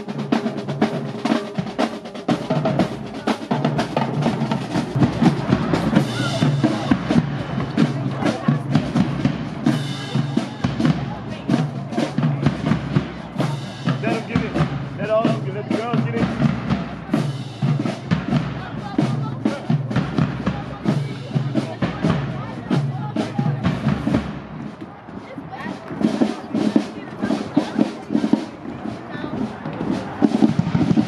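Marching band drumline playing a cadence on snare drums, tenor drums and bass drums, a dense, fast stream of drum strokes. It eases briefly about five seconds before the end, then picks up again.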